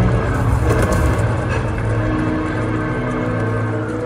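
Live arena concert music heard from the crowd: long sustained synth chords over a heavy deep bass.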